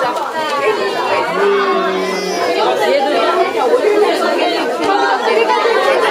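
Hubbub of many children and adults talking over one another in a crowded room, with no single voice standing out.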